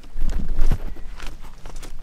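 Handling knocks and rumble from a camera being passed from hand to hand, with footsteps on loose stones; the thumps are loudest in the first second, then give way to lighter clicks.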